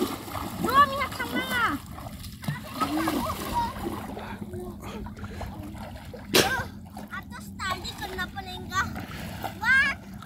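Water splashing and sloshing as children wade and paddle their hands in shallow river water, with one sharper splash about six seconds in. Short high-pitched calls from the children come through over the water.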